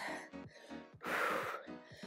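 Background music, with a woman's heavy exhaled breath of about half a second about a second in, from the exertion of a single-leg step-down exercise.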